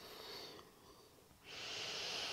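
A woman's slow, deep breath, heard as a soft, steady rush of air that starts about halfway in after a faint lead-in.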